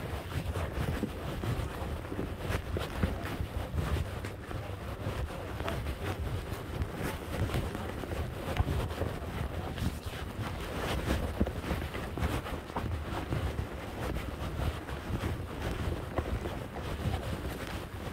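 Wind buffeting a phone's microphone in a steady low rumble, with irregular rustles and light knocks throughout.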